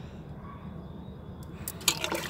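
Low, steady background rumble, with a few light clicks near the end.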